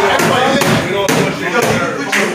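Indistinct voices in a hall, broken by a few sharp knocks.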